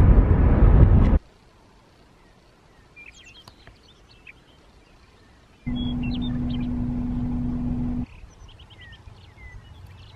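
Road noise of a moving car, cutting off about a second in, then quiet open-air ambience with small birds chirping. In the middle, a steady rumble with a low hum runs for about two seconds and then stops suddenly.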